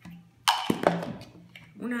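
A few quick hard plastic clicks and knocks, about half a second to one second in, as plastic bottle caps are set into and against plastic jars.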